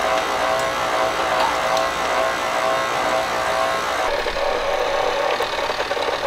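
KitchenAid stand mixer's motor running at low speed (speed two), driving a food strainer attachment as blackberries are pressed through it: a steady motor hum with a whine. The tone changes slightly about four seconds in.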